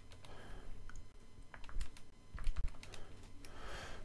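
Keys tapped on a computer keyboard: a scattered, irregular run of short clicks.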